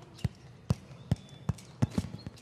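A rubber play ball bouncing on a hard tiled floor: five sharp bounces about two a second.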